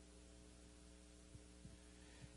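Near silence in a pause of speech: only a faint, steady electrical mains hum.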